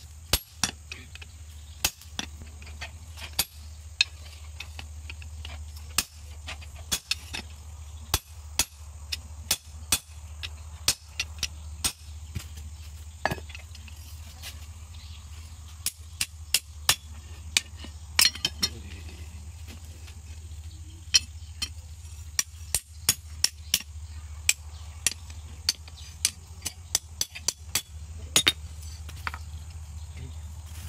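Blacksmith's hand hammer striking a golok (single-edged machete) blade on an anvil while forging it. The sharp blows come irregularly, often in quick runs of several with short pauses between, over a steady low hum.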